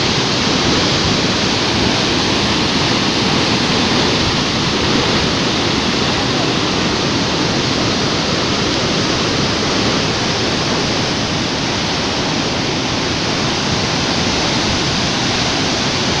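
Muddy floodwater rushing out beneath raised barrage gates, a steady, loud roar of churning water.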